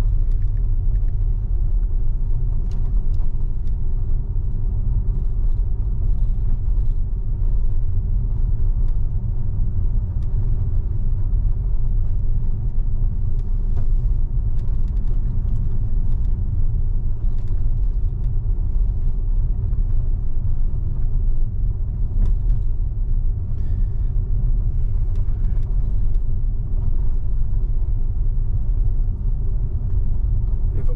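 Steady low rumble of tyres on the road, heard inside the cabin of a Tesla electric car driving at low speed along residential streets.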